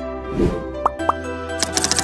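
Intro music with a pop about half a second in, then a quick run of keyboard-typing clicks starting near the end, a sound effect for text being typed into a search bar.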